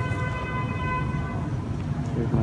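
A long, steady, horn-like tone held on one pitch, fading out shortly before the end, over a constant low outdoor rumble.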